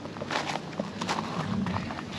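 Footsteps crunching on gravel: about five soft, irregular steps.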